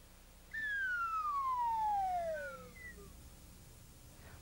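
Falling slide-whistle sound effect: one smooth tone gliding steadily down in pitch over about two seconds, starting about half a second in.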